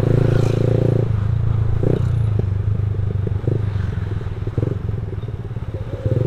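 A small automatic scooter's engine running as it rides through traffic, its note thinning about a second in. Short clatters and knocks are scattered throughout.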